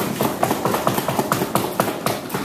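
Audience applause as one debate speaker finishes and the next is welcomed: a dense, irregular patter of quick taps and claps.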